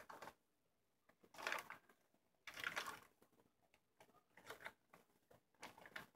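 Paper pages of a handmade journal being turned and handled: about four short, soft paper rustles roughly a second apart, with near silence between them.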